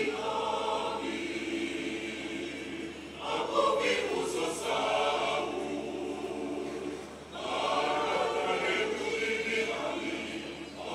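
Mixed choir of men and women singing a motet in the Ebira language, in sustained phrases that break briefly about three and seven seconds in.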